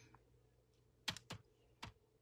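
Three short sharp clicks over near silence: two close together about a second in, and a third near the end.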